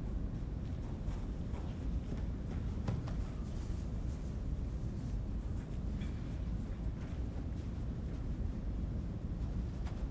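Steady low rumble of a large room's background noise, with a few faint soft knocks from players' footsteps on artificial turf as they run a dodge drill.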